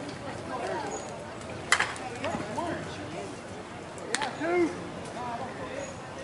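Softball bat striking the ball about two seconds in, one sharp crack with a brief ring, amid players' voices and calls. Another sharp click comes about four seconds in, followed by a loud shout.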